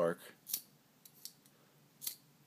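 Flint wheel of a vintage trench lighter being thumbed against its flint: one rasping metallic strike about half a second in, then a few faint ticks. It is giving only a weak spark.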